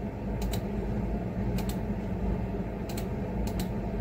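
A few separate key presses on a computer keyboard, about five sharp clicks spread out over a few seconds, over a steady low hum.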